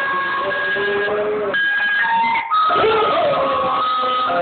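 Ice cream van chime tune playing, with a chocolate Labrador howling along in long, wavering notes.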